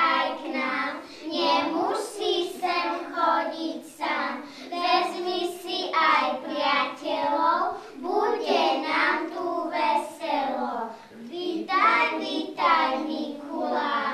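A group of young children singing a song together, in short phrases with brief breaths between them.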